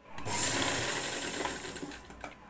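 Household sewing machine stitching along a blouse's border, a steady mechanical run that starts at once and eases off near the end.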